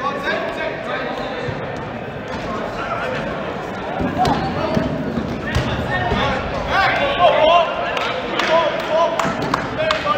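Players shouting and calling across a gym during a dodgeball rally, with dodgeballs thudding on the floor and walls as they are thrown. The voices get busier and louder about four seconds in.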